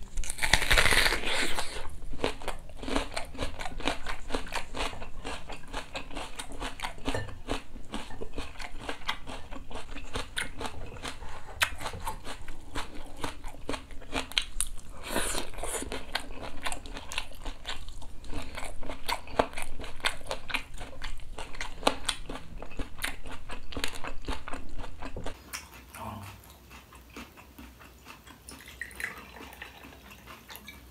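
Loud crunch of teeth biting into a whole raw onion at the start, followed by long, steady, crunchy chewing with many small crackles. There is a second loud crunching bite about fifteen seconds in, and the chewing gets much quieter for the last few seconds.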